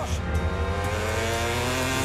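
Motorcycle engine accelerating, its pitch rising steadily.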